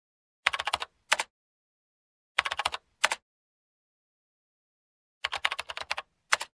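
Typing sound effect: three quick runs of keystroke clicks about two seconds apart, each followed by a separate click, with dead silence between the runs.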